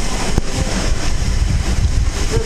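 Wind buffeting the helmet-mounted camera's microphone: a steady rushing noise with a heavy low rumble. There is a single click about half a second in.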